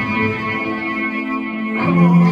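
Live rock band playing loud, with a distorted, effects-laden electric guitar holding chords over the bass. A new chord is struck near the end.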